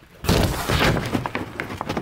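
An old floor giving way underfoot: a sudden crash of breaking material and falling debris about a quarter second in, thinning into scattered cracks and clatter.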